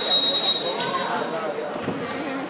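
A referee's whistle: one sharp, high blast about half a second long, blown to stop play. Crowd chatter and court noise from the gym run underneath.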